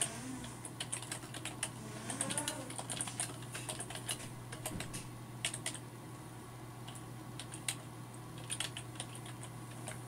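Computer keyboard being typed on in quick runs of key clicks, thinning out to a few scattered keystrokes and a short burst in the second half.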